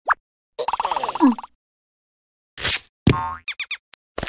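Cartoon sound effects: a rapid pulsing voice-like sound that ends in a falling glide, then a short whoosh, a sharp hit and a springy boing with a few quick chirping glides as a small cartoon larva drops to the floor.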